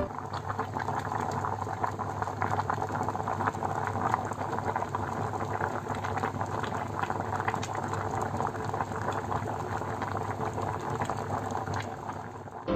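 Water at a rolling boil in a stainless steel pot of pumpkin chunks and potato: steady, dense bubbling with many small pops.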